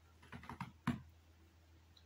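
A quick cluster of four or five light taps of hands on a floor mat, within about half a second; the last is the loudest.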